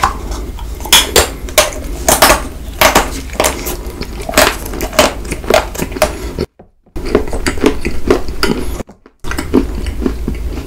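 Close-miked biting and chewing of a hollow white chocolate egg shell: a dense run of crisp cracks and crunches as the hard chocolate breaks between the teeth. Two short gaps of dead silence break it about six and a half and nine seconds in.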